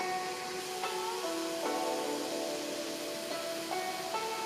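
Background music of plucked-string notes, each held briefly before the next, over a steady hiss.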